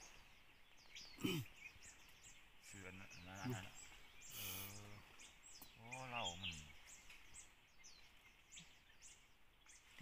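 Wild birds chirping: a rapid, continuous run of short, high, falling chirps, with a man's low voice saying a few brief words.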